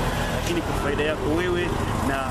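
A man speaking in Swahili, close to the microphone, over a steady low rumble.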